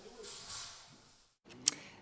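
Faint background hiss fading out, then a brief moment of dead silence at an edit, then a single short click just before a man's voice begins.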